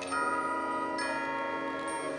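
Marching band music in a soft passage carried by the front ensemble's chimes and mallet percussion: held, ringing tones with new notes struck just after the start and again about a second in.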